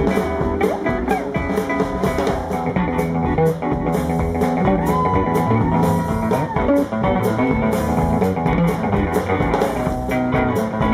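Live rockabilly band playing an instrumental stretch with no singing: a hollow-body electric guitar leads over upright bass and drums. About halfway through, the guitar holds one long high note.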